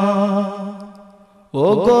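A voice singing a Bengali Islamic devotional song. A held note fades away over the first second and a half, and after a brief pause a new phrase begins with an upward slide on "ogo, o…".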